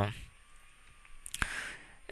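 A single sharp computer mouse click a little past the middle, in an otherwise quiet stretch, with a faint breath around it; the tail of a drawn-out spoken 'uh' fades out at the very start.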